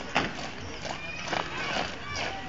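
A drill squad's boots striking brick paving together while marching, two sharp stamps about a second apart, with voices in the background.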